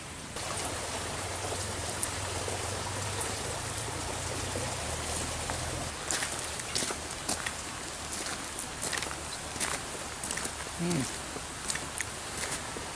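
Close handling and rustling noise, then from about halfway a scatter of soft clicks as a man chews a freshly picked plant, with a short hummed 'mm' near the end.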